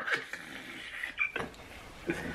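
Faint, breathy silent laughter from several men, wheezing between loud laughs, with a short high-pitched squeak about a second in.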